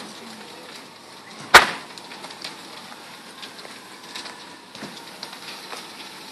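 Burning house: one loud, sharp crack about a second and a half in, over a steady low background noise with faint scattered crackles.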